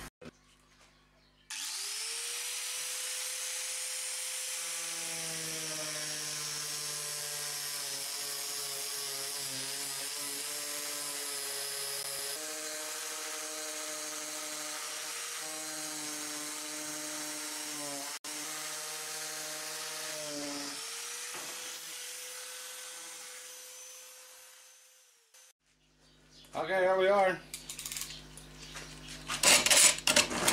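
Angle grinder with a thin cut-off disc spinning up, then cutting through the thin sheet metal of a garbage can with a steady whine and a high hiss, its pitch dropping slightly under load. Near the end it runs free briefly and winds down.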